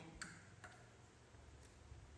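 Near silence: room tone with a low hum and three faint, short clicks.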